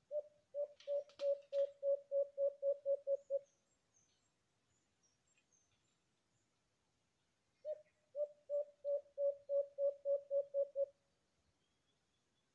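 An alimokon dove cooing: two runs of about a dozen quick, low coos, evenly spaced and growing louder through each run, with a pause of about four seconds between them.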